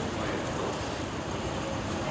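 Steady city background noise with a low rumble, typical of traffic around a busy street and subway entrance.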